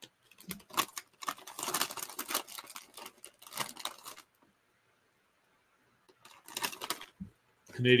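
Rapid clicks and rustling close to a microphone for the first few seconds, then a stretch of complete silence, then a few more clicks and a single low thump just before speech.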